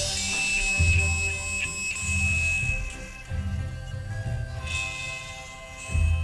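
Isolated drum-kit and tambourine track, in a sparse passage with few sharp hits: low drawn-out drum sounds come and go under a faint steady high tone.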